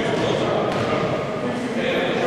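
Players' voices calling out and chattering, echoing around a large sports hall during a volleyball game.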